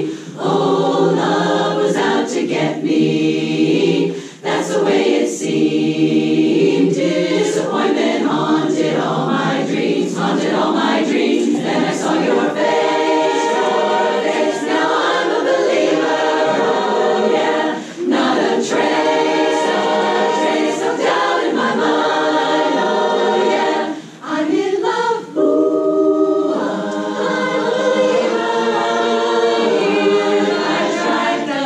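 A women's chorus singing a cappella in full harmony, with brief breaks between phrases.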